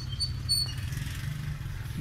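A steady low engine rumble, like a motorcycle idling, with a few short high bird chirps in the first second.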